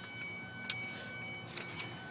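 Faint clicks and knocks, one sharp click about a third of the way in and a few more past the middle, with the door and phone being handled while getting out of the driver's seat of a 2002 Ford Escape. A faint steady tone sounds on and off.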